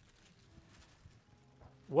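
Near silence: room tone with a few faint clicks, until a man starts speaking right at the end.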